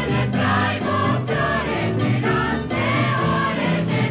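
Background music: a choir singing with instrumental accompaniment at a steady level.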